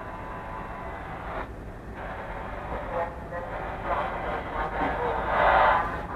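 A train running slowly, heard from the driver's cab, with a steady low rumble and a louder swell of noise near the end.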